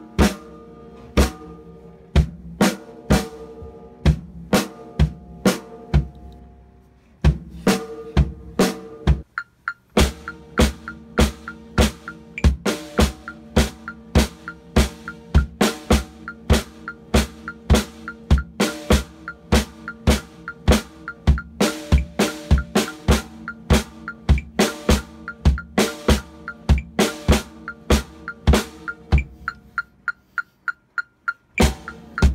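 Acoustic drum kit being played in practice: sharp snare and bass-drum strokes with ringing drum tones. There is a short break about nine seconds in, then a steady, denser pattern of roughly two strong strokes a second.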